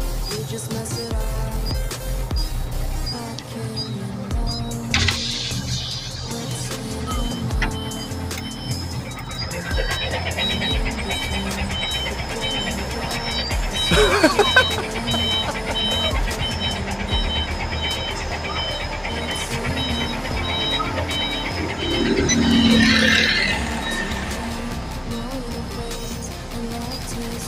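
Background music over a low vehicle engine hum, with a steady repeating electronic beep, typical of a reversing alarm, sounding from about ten seconds in until near the end. A brief laugh comes about halfway through.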